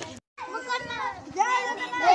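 Several boys' voices shouting together, after a brief gap of silence near the start.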